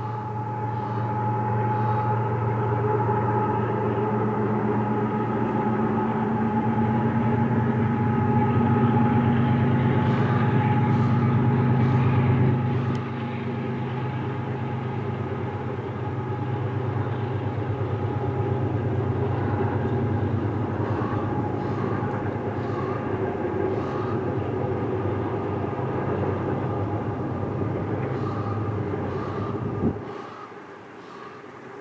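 A CP double-stack freight train led by GE AC4400CW and ES44AC diesel locomotives passes with a steady, loud diesel drone. The drone eases off a little under halfway through, and the continuing rumble of the stack cars rolling by follows.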